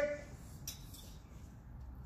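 Quiet room tone in a pause between counts, with a faint brief rustle about two-thirds of a second in.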